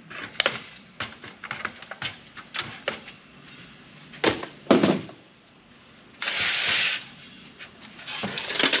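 Handling noise from an old PC's sheet-metal case and its wiring being pulled out: a run of light clicks and rattles, two louder knocks about four and a half seconds in, and a short metal scrape about six seconds in.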